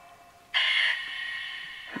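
Necrophonic spirit-box app playing through a phone's small speaker: a sudden burst of distorted, scratchy sound starting about half a second in and fading away over the next second and a half.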